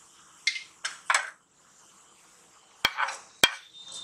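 Mustard and cumin seeds sizzling faintly in hot oil in a pan, with a few crackles in the first second or so as the seeds begin to splutter. Near the end a spatula stirring in the pan gives two sharp knocks about half a second apart.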